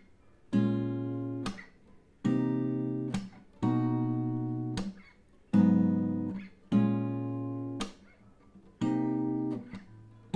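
Acoustic guitar playing a slow fingerpicked progression of minor-seventh chords (G#m7, Bbm7, Cm7, then B/C#), with four strings plucked together for each chord. Six chords, each ringing for about a second and then cut short.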